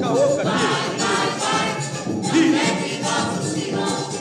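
A choir singing an umbanda terreiro chant (ponto) in a vintage 1950s recording, several voices together in a steady chorus.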